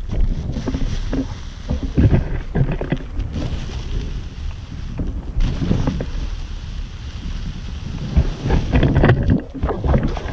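Wind buffeting the camera microphone, a heavy low rumble, with irregular thuds and rustles of inline skates rolling and striding through grass.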